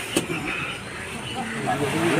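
Voices talking in the background, with one sharp knock just after the start.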